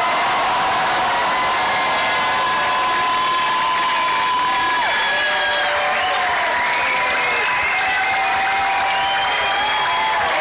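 Concert crowd cheering and applauding, with long high shouts held above the clapping.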